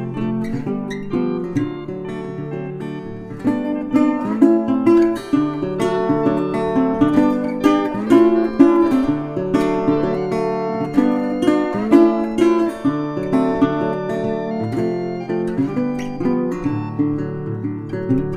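Instrumental music led by acoustic guitar, a steady run of picked and strummed chords, a little softer about two to three seconds in.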